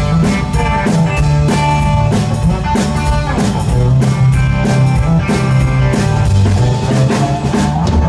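Live country band playing an instrumental passage: acoustic guitar strumming over a drum kit keeping a steady beat.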